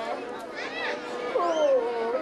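A woman singing a Thái folk song, holding one long note for over a second, then gliding down into the next phrase near the end.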